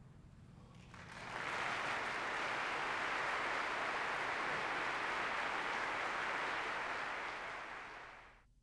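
Audience applauding. The applause swells up about a second in, holds steady, and dies away near the end.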